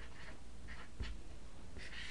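Marker writing on a whiteboard: a few short, faint scratchy strokes, with a soft thump about a second in.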